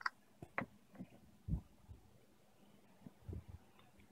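A handful of light clicks and knocks as alligator-clip test leads and a multimeter are handled on a wooden table to short the battery and read its current. Several clicks come in the first two seconds, then a short run of duller thumps a little past three seconds.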